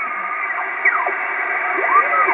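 Kenwood TS-450S HF transceiver's receiver audio from its speaker as the main tuning dial is turned: steady band hiss with several tones sliding up and down in pitch as signals are tuned across.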